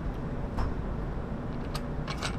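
A few faint, sharp clicks over a steady low background hum.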